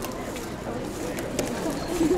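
Sports-hall ambience between points: faint distant voices, with a few light ticks.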